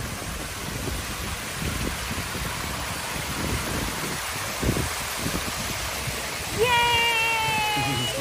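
Water rushing steadily as it falls over a small stepped stone weir. Near the end a person's voice holds one long, slightly falling note over the water.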